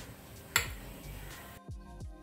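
A single sharp tap of the steel vessel against the mixer-grinder jar as the ingredients are tipped in. Faint steady tones follow near the end.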